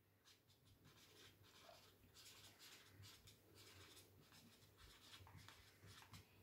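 Very faint strokes of a felt-tip marker writing words on a white board, a run of short, soft scrapes over near silence.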